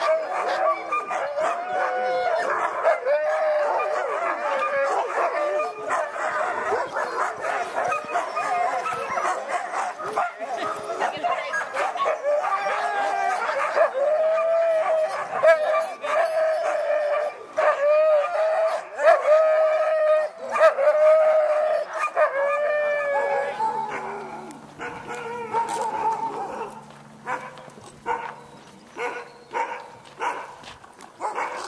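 A pack of excited sled dogs barking, yipping and howling in a continuous, overlapping chorus of high calls while they are being harnessed and hooked up to run. The chorus thins out and quietens about three-quarters of the way through, when a faint low steady hum comes in for a few seconds.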